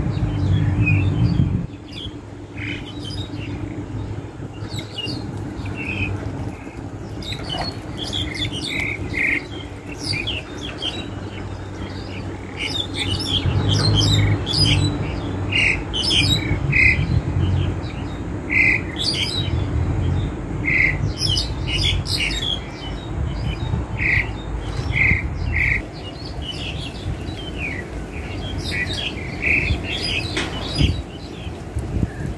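Black-collared starling calling: a steady string of short, harsh squawks and chirps, over a low background rumble.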